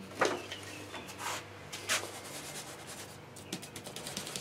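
A few light knocks and clicks of small objects being handled on a workbench: the loudest just after the start, two more about a second and two seconds in, then smaller ticks near the end, over a low steady hum.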